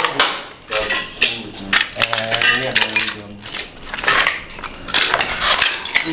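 Footsteps crunching over rubble and debris on a concrete floor, with sharp clinks and scrapes throughout, and short stretches of low voices in between.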